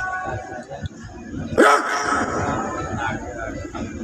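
Murmur of a crowd of voices on an outdoor parade ground, cut across by a sudden loud, short shouted call with a falling pitch about a second and a half in.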